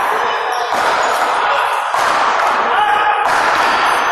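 A few sharp, echoing smacks of paddleball balls off paddles and the front wall in a large indoor court hall, over a steady wash of indistinct voices and hall noise.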